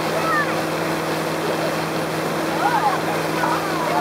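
Towboat's inboard engine running steadily under way, with the rushing and churning of its wake behind the stern.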